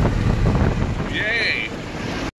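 Pickup truck driving at highway speed, heard from inside the cab: a steady low rumble of road, engine and wind noise. A brief high wavering sound comes in about halfway through.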